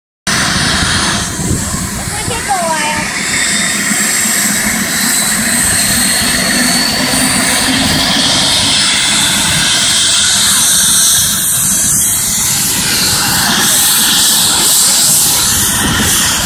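Air-ambulance helicopter running on the ground before takeoff: a steady turbine whine over a loud wash of rotor noise and low rotor beat, the whine rising slightly in pitch over the first several seconds.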